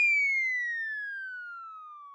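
A comic sound effect: one whistle-like tone glides steadily down in pitch and fades as it falls, as a sting after a punchline.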